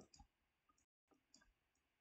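Near silence broken by a few faint, short clicks of a stylus tapping on a tablet while handwriting is written.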